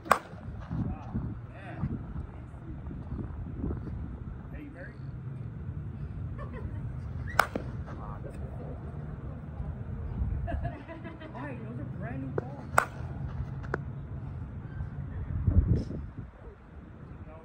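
Monsta TruDOMN8 slowpitch softball bat striking a softball, a single sharp crack right at the start. Two more sharp cracks come later, one about halfway through and one near the three-quarter mark.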